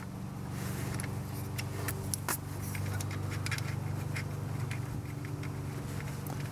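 Ratchet wrench clicking in short, uneven bursts as the 10 mm ignition-coil bolt is loosened, over a steady low hum.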